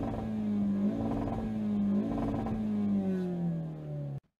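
Ford Focus RS's 2.3 EcoBoost turbocharged four-cylinder engine running at raised revs, its pitch swelling and easing in waves and falling away near the end.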